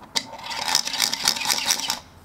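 A 3D-printed plastic spinning top, driven by pushing down a spiral coil plunger through a one-way clutch, set spinning on a glass tabletop. A sharp click is followed by a fast plastic rattling whir that cuts off suddenly at the end.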